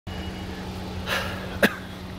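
A person's short breath about a second in, then a brief, sharp cough a little after, over a steady low hum.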